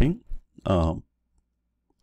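A man's voice saying a couple of words, with a short click between them.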